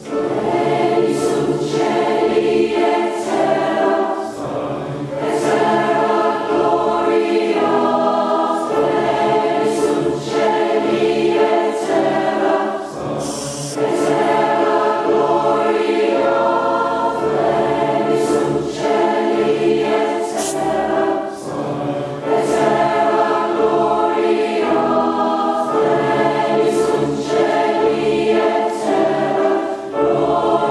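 Large mixed choir singing loudly with grand piano accompaniment, coming in at full voice right at the start after a soft passage and singing in phrases with short breaths between them.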